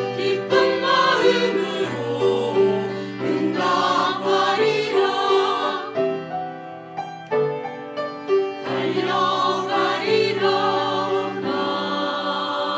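Church choir of mixed voices singing a slow hymn anthem in Korean, with piano accompaniment. The singing softens about six seconds in and swells again near nine seconds.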